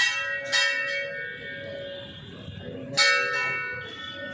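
Hindu temple bell rung by hand: two strikes half a second apart, then a third about three seconds in, each ringing on and fading.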